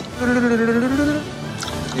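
A man's voice making a buzzing hum, held on one gently wavering note for about a second and then fading away.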